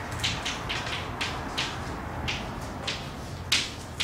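Chalk tapping and scratching on a blackboard as an equation is written: a quick, uneven run of short sharp taps, about three a second, over a low steady room hum.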